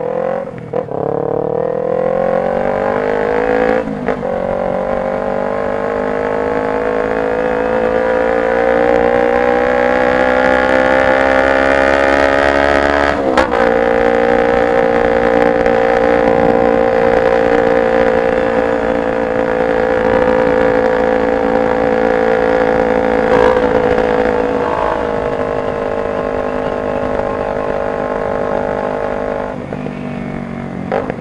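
Kawasaki Ninja 250R parallel-twin with a straight-pipe exhaust, under way. Its engine note climbs in pitch over the first ten seconds or so, with a short click about thirteen seconds in. It then holds a steady cruise and eases off slightly near the end.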